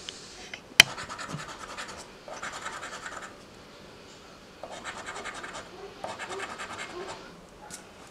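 A coin scratching the coating off a lottery scratch-off ticket in four bursts of quick back-and-forth strokes, with short pauses between them and a sharp click about a second in.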